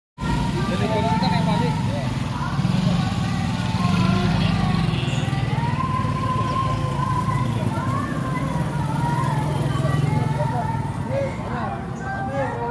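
Motor scooter engines running in a street, with voices talking over them.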